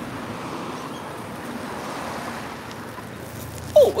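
Road traffic going past: a steady rush of tyre and engine noise that swells and then eases off over a couple of seconds.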